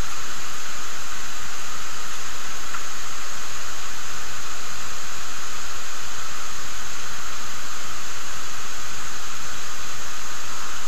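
Loud, steady hiss of recording noise that does not change.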